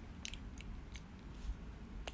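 Handling noise of a phone held close as it is moved: a few small sharp clicks over a low rumble.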